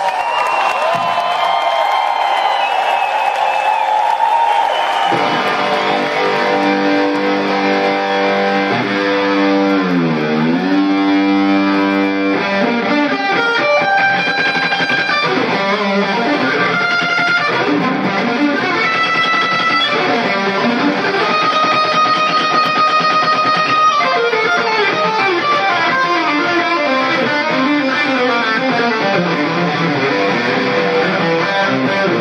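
Live rock band with electric guitar playing a slow melodic line of held notes. It comes out of a noisy wash in the first few seconds, and about ten seconds in one note bends down and back up.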